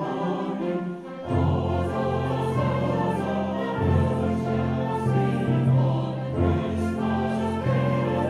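A mixed choir singing a Christmas carol arrangement with a concert wind band accompanying. About a second in, the band's low bass notes come in strongly and the music gets louder.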